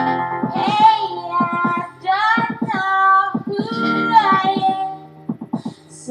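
Pop song: a high-pitched voice sings long held notes that slide up and down, over a rhythmic strummed accompaniment.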